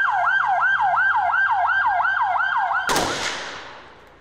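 Gendarmerie van siren in a fast yelp, about three sweeps a second, cutting off near the end as a single sharp bang rings out with a long echoing tail.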